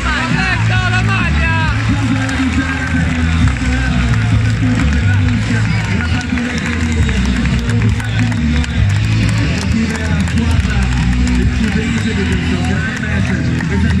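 Loud music with a heavy, steady bass beat, with voices over it.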